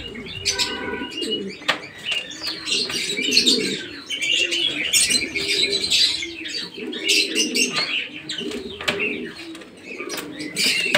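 A flock of domestic fancy pigeons cooing steadily, mixed with higher chirping calls and occasional wing flaps and sharp clicks.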